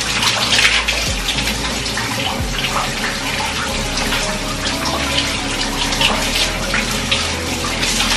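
Shower spray running and splashing onto hair and body as the hair is rinsed under the showerhead, a steady rush of water with small irregular splashes.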